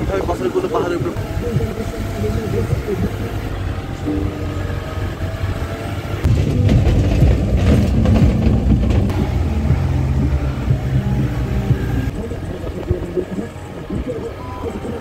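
A vehicle's engine and road noise heard from inside the cabin as it drives. The low rumble grows louder about six seconds in and eases again near the end.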